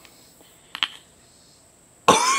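Two quick clicks a little under a second in, from a handheld lighter as a tobacco pipe is lit, over a faint steady high-pitched hum.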